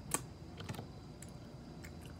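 A few keystrokes on a computer keyboard: one sharp click just after the start, then a couple of lighter ones about half a second later.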